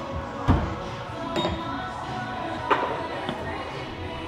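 Thrown axes striking wooden target boards: one heavy thud about half a second in, then two lighter knocks, over background music.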